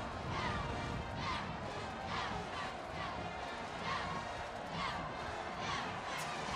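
Music from a band in the stadium stands, with crowd noise and a regular beat about once a second, over a low wind rumble on the microphone.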